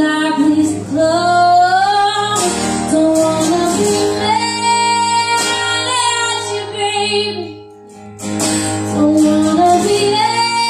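A woman singing live over acoustic guitar, with long held and gliding notes rather than clear words. The singing breaks off briefly about two seconds before the end, then comes back in.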